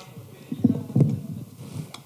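Microphone handling noise: a burst of low thumps and rubbing with a couple of sharp clicks as the vocal microphone on its boom stand is gripped and moved.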